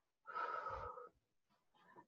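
A single audible breath close to the microphone, lasting under a second, with a faint whistling tone in it.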